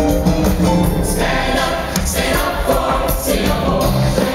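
A large crowd singing together with loud music played over the stadium sound system.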